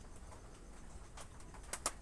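Low steady hum of a quiet room, with two or three quick, sharp rustles or clicks near the end.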